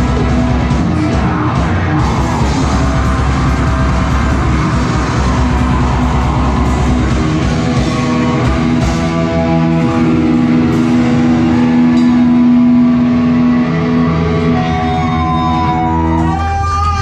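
Live metal band playing loud, with distorted electric guitars and a drum kit; from about halfway through the guitars hold long sustained notes, and pitches slide near the end.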